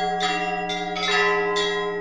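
Church bells ringing a short peal, a new bell struck about every half second while the earlier ones ring on over a steady low tone.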